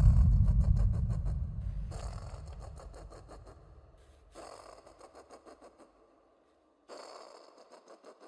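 Horror sound effect: a sudden deep boom that fades slowly over about five seconds, overlaid by three rapidly pulsing bursts roughly two and a half seconds apart, each dying away.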